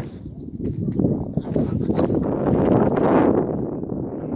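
Footsteps of someone walking on a wet, muddy dirt track, with handling noise on a handheld phone's microphone; the noise builds to its loudest about three seconds in.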